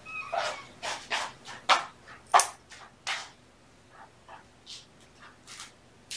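A kitten making a run of short squeaks and fussing sounds in quick succession, mostly in the first three seconds, while its claws are being trimmed.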